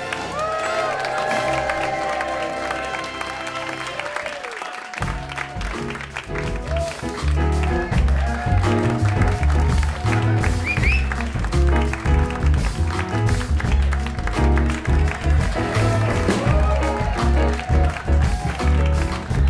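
A live jazz trio of piano, upright bass and drums playing an upbeat opening number: held notes at first, then bass and drums come in with a steady beat about five seconds in, while the audience applauds.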